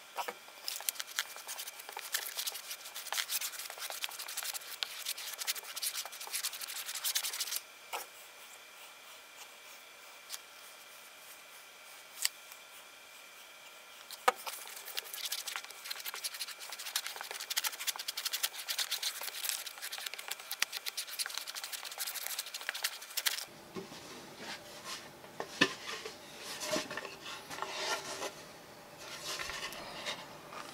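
A glue brush scrubbing wood glue across a plywood board: a scratchy rubbing in two long spells with a quieter pause between. Near the end come a few scattered knocks as the boards are handled.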